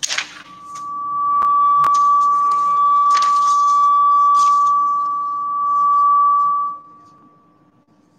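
A single steady high-pitched tone, like an electronic alarm or beep, swelling in over the first second or so, dipping briefly, and cutting off about seven seconds in. A few clicks and short paper rustles are heard over it as the question sheets are handled.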